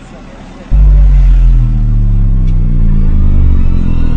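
A deep, loud spacecraft-style hum sound effect cuts in suddenly about a second in and holds steady, its pitch sinking slowly.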